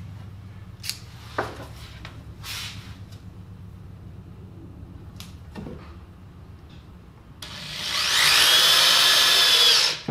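Ryobi cordless drill driving a screw into a wooden board: a few light knocks, then the motor whines up to speed and runs for about two and a half seconds near the end, stopping as the screw seats.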